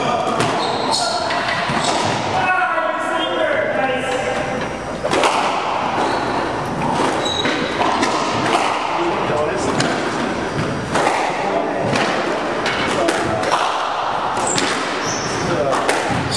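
Squash rally: the ball being struck by rackets and hitting the court walls and floor, a string of sharp smacks and thuds at irregular intervals, with short high squeaks from court shoes on the wooden floor between them.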